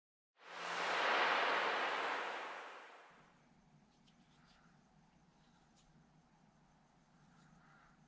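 A loud rushing whoosh swells up within about a second and fades away by about three seconds in. After it come faint clicks of small plastic RC car parts being handled and fitted together.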